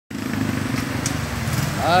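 Engines of cars and motorcycles running in slow, congested traffic, a steady low hum with a faint click about a second in.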